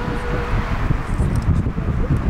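Wind buffeting the microphone, a low uneven rumble.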